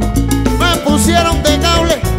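Cuban dance orchestra playing a guaracha live in an instrumental passage: bending melody lines over a steady bass, keyboard and Latin percussion.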